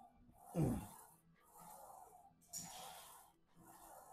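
A man breathing hard during a set of hack squats: breathy rushes of air, with a short voiced exhale that drops steeply in pitch about half a second in and another burst of breath near the middle.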